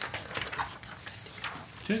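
Scattered light clicks and rustles in a quiet meeting room, with a voice saying "okay" near the end.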